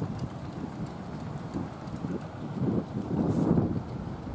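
Wind rumbling on the camera microphone, with irregular low thumps that grow louder toward the end.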